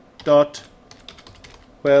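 Computer keyboard typing: a quick run of light key clicks for about a second and a half, with a short spoken word just before and another starting at the very end.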